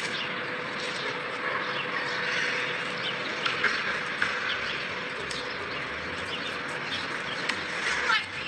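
Outdoor city-park ambience: a steady hum of distant traffic, with small birds chirping now and then from about three seconds in.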